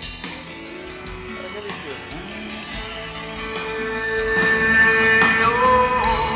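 A live band playing on a concert stage, heard from far back in the crowd. The music swells louder through the second half under a long held note.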